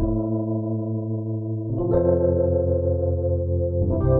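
Electric piano sound from a Viscount Legend '70s stage piano's physically modelled electric piano module, played as held chords that change about two seconds in and again near the end.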